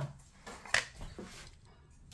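A few light clicks and taps from small wooden dollhouse door and frame pieces being handled, with faint room noise between them.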